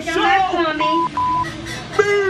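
A person's voice with two short, steady, high beep tones about a second in, one right after the other: an edited-in censor bleep.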